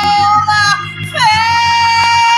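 A solo voice singing a gospel song in a high register over a low, sustained accompaniment. One note is held, there is a short break about a second in, then a new long note with vibrato.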